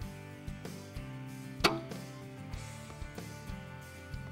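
Excalibur Matrix Mega 405 recurve crossbow firing a bolt: one sharp crack about one and a half seconds in, over steady background music.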